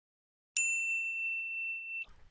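A single high, bell-like ding about half a second in, ringing on as one clear tone and slowly fading: an intro chime sound effect.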